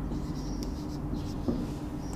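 Marker pen writing on a whiteboard in faint scratchy strokes, with a single click about one and a half seconds in, over a low steady hum.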